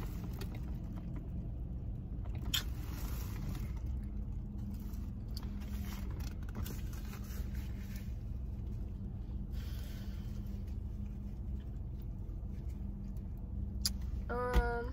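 Steady low hum of an idling car heard from inside its cabin, with a few faint clicks and rustles.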